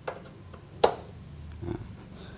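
XLR cable plugs pushed into the XLR main output jacks of an Ashley AX8N mixer: a soft click at the start, then one sharp click a little under a second in as a connector seats.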